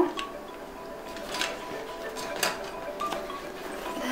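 Soft background music, with light plastic rustling and a couple of sharp clicks from rolls of tape in plastic packaging being handled and slipped into a fabric tote's pocket.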